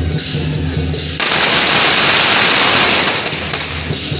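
A string of firecrackers going off beside a carried deity sedan chair. It starts suddenly about a second in as a dense, rapid crackle and lasts about two seconds.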